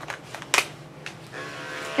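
Electric dog-grooming clippers switched on about a second and a half in, then running with a steady hum. A few sharp clicks come before it.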